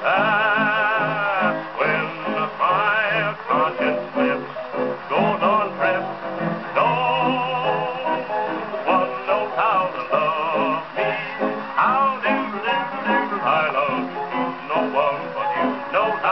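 A 1920s Brunswick 78 rpm record playing on a gramophone: a male vocal with strummed string accompaniment. It holds several long notes with wide vibrato, near the start and again about seven seconds in, and the sound tops out at about 5 kHz.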